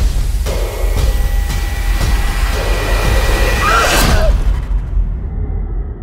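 Trailer score and sound design: a deep steady rumble with sharp hits, building to a rising whoosh about four seconds in, after which the high end cuts away and only the low drone remains.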